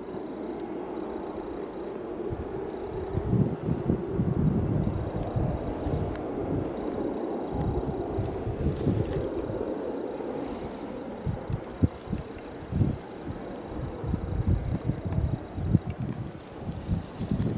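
Wind buffeting the microphone outdoors, an uneven, gusty low rumble that rises and falls.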